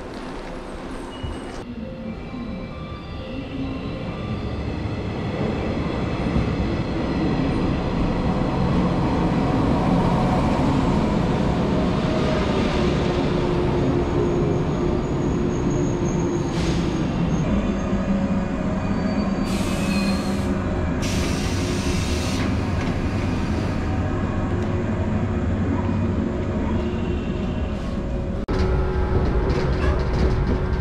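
Electric commuter train at a station platform: the running noise of its wheels and motors builds over several seconds and then holds steady, with two brief high hisses around the middle. Near the end comes a lower, steady rumble from inside the moving carriage.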